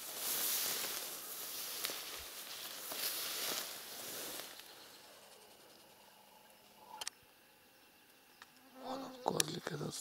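Tall grass and nettles swishing and rustling against a walking horse, in several surges over the first four seconds or so, then falling away to a quiet stretch.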